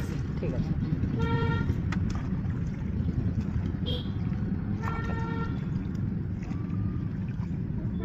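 Vehicle horns honking in three short blasts, over a steady low rumble.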